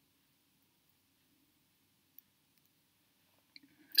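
Near silence: quiet room tone with a faint click a little after two seconds in and a few tiny clicks shortly before the end.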